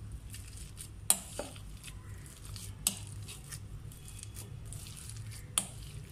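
Metal potato masher pressing boiled potatoes in a bowl: soft squishing with scattered clinks of the masher against the bowl, three of them sharp and loudest, about a second in, near the middle and near the end.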